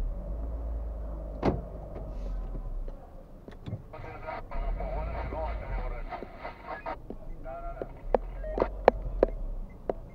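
Workshop sounds in a tyre service: several sharp metallic clanks, one early and a quick run of them near the end, as a mechanic works on a car's wheel, over a low steady hum.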